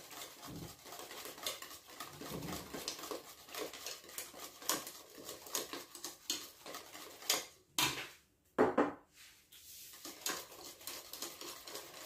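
Wire whisk beating thick custard in a stainless steel pot, the wires clicking and scraping against the pot's sides in quick irregular strokes, with brief pauses about two-thirds of the way through.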